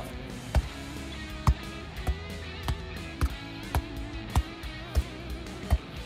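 Background music with guitar, over which a football is kicked repeatedly in keepy-uppy: a dull thump for each touch, about nine in all, spaced a little over half a second apart.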